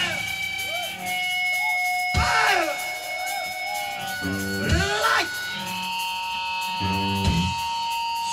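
Live punk rock band playing: electric guitar holds sustained notes with sliding, bending pitches, and the full band comes in with short stretches of chords twice, about four and seven seconds in.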